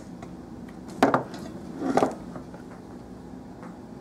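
Two knocks about a second apart: kitchenware being handled and set down on a table while mixing ingredients.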